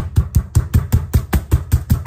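Raw chicken breast being pounded flat: a rapid, even run of dull knocks, about six a second, flattening it to an even thickness.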